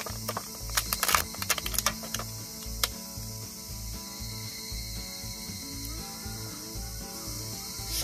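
Clear plastic food container clicking and crackling as its snap lid is opened and chopped green onions are picked out by hand, a cluster of sharp clicks over the first three seconds, then quieter handling.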